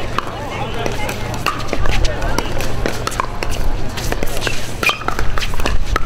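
Pickleball paddles striking a hard plastic ball during a doubles rally: a series of sharp, dry pops at irregular intervals, roughly one every half second to a second. Spectators' voices chatter underneath.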